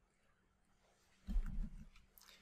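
Quiet room tone, then a little over a second in a short, low vocal noise from the narrator, such as a breath or throat sound, lasting about half a second.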